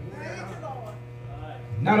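Steady electrical mains hum from a public-address system, with a faint voice in the first second; an amplified man's voice starts speaking near the end.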